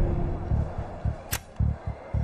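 Tense background music with low pulsing beats. A little over a second in comes a single sharp clack, a number plate being flipped on a stock quotation board.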